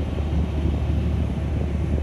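Heavy tow truck's diesel engine running steadily as a low, even rumble while it drives the boom winch, with the cable pulling taut under heavy load on a car in a ditch.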